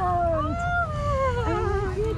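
Great Danes giving long, drawn-out whining howls: several overlapping pitched cries that slide slowly down in pitch, one rising and falling about half a second to a second in.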